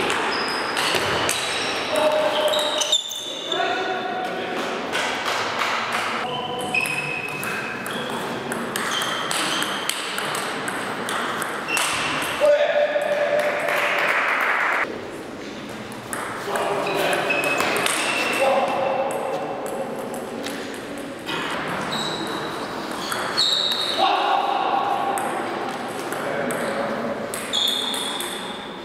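Table tennis ball clicking off the bats and table in doubles rallies, with breaks between points.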